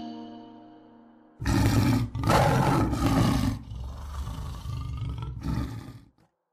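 A big cat's roar as an intro sound effect: it starts about a second and a half in, is loudest for about two seconds, then goes on more quietly and stops shortly before the end. Before it, the last notes of a xylophone-like jingle die away.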